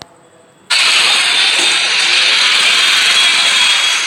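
Street traffic noise recorded on a phone: motorbikes and scooters on a busy town road, starting suddenly and loud less than a second in.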